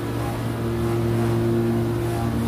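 A steady low machine hum, one held tone with its overtones, unchanging throughout.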